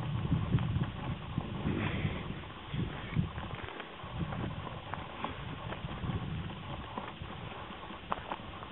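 Hooves of a small herd of black-and-white cattle trotting and walking on a gravel farm track, mixed with the crunch of a person's footsteps on the gravel: many irregular, uneven steps.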